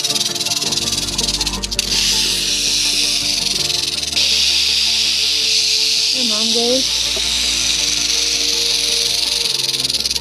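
Western diamondback rattlesnake rattling its tail in a continuous high buzz that grows louder about four seconds in. Background music plays underneath.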